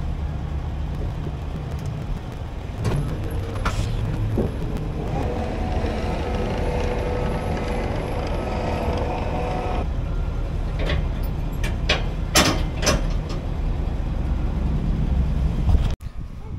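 Diesel engine of a Caterpillar track loader running steadily as it is unloaded from a trailer, with a steady whine for several seconds in the middle and a few metal clunks.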